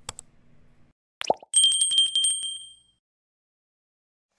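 Subscribe-button animation sound effects: a short pop about a second in, then a bell sound effect ringing with a quick trill of bright, high tones that fades out about a second and a half later.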